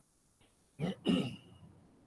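A person clearing their throat: two short rough bursts close together about a second in.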